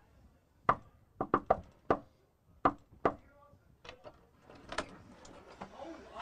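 Knuckles knocking on a front door: a single rap, then three quick raps and another, in the first two seconds. A few more scattered clicks and knocks follow as the door is unlatched and opened.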